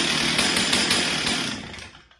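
Stihl two-stroke chainsaw engine running loud, then dying away near the end.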